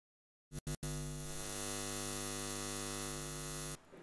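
Electrical hum with many overtones, coming in after two short blips about half a second in, holding steady, then cutting off suddenly just before the end.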